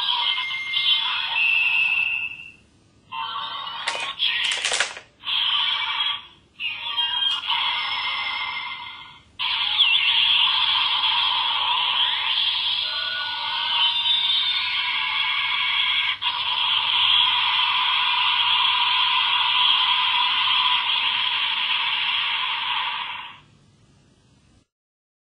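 Bandai DX Delta Rise Claw toy weapon playing its electronic sound effects and music through its small built-in speaker for the Wrecking Burst finishing attack. It sounds tinny. A few short choppy bursts come first, then one long continuous passage that cuts off near the end.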